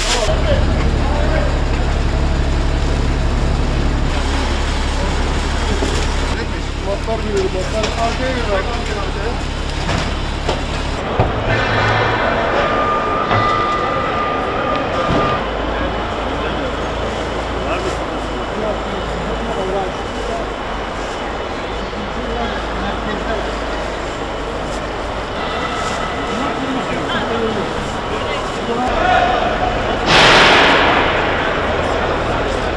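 Indistinct chatter of people working, over a steady low rumble. About eleven seconds in the rumble drops away and the sound becomes the murmur of a crowd in a large hall.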